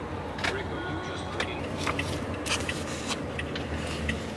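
Car engine and road hum heard from inside the cabin, low and steady, with scattered short clicks and taps.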